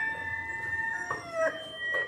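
Rooster crowing in an animated film's soundtrack: one long cock-a-doodle-doo that falls in pitch about a second and a half in.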